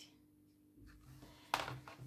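Quiet room tone with a faint steady hum, broken about one and a half seconds in by a short burst of hand-handling noise as the paper ball is set down and the craft book is touched.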